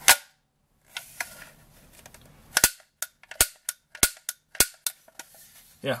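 Marx Mare's Laig toy click rifle's Winchester-style lever action being worked by hand, giving sharp mechanical clicks and snaps. There is a loud snap at the start, two softer clicks about a second in, then a quick run of six sharp clicks in the second half.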